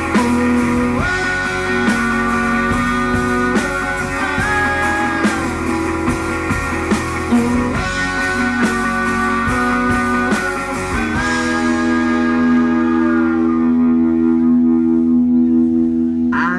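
Live rock band playing an instrumental passage: electric guitars with long held notes over a drum kit. About eleven seconds in, the drums drop out and the guitars ring on held notes.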